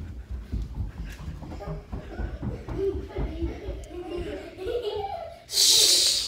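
Running footsteps thudding on carpet, with the camera jostling, as children race along a corridor, and children's voices calling in the distance. Near the end comes a short, loud rush of hiss.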